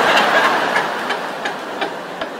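Stand-up comedy audience laughing and applauding after a punchline: a dense crowd noise that is loudest at the start and slowly fades.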